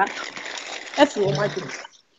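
Voices on a video call, with a steady rushing noise behind them that stops suddenly near the end.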